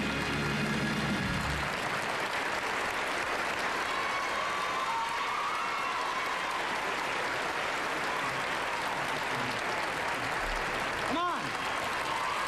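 A studio audience applauding as the band's final held chord ends about a second and a half in. A brief swooping tone sounds near the end.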